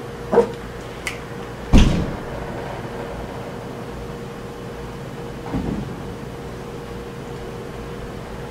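A door banging shut once, a sharp thud about two seconds in, with a couple of faint clicks before it and a steady low hum under a quiet room.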